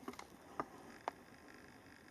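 Quiet room tone with a few faint, short clicks: one near the start, another about half a second in, and a third about a second in.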